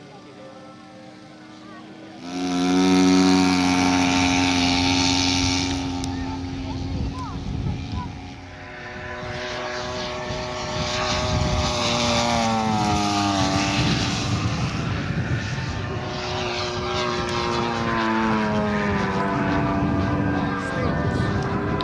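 Engine and propeller of a large radio-controlled model aircraft flying overhead. The sound comes in suddenly about two seconds in, and its pitch slides down and back up several times as the model passes and manoeuvres.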